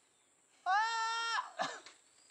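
A single drawn-out, bleat-like vocal call, steady in pitch and lasting under a second. It starts about half a second in and is followed by a brief trailing sound.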